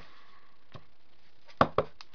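Two quick sharp knocks of a rubber stamp on a clear acrylic block striking down while stamping ink onto a card box, about a second and a half in, after a faint tick.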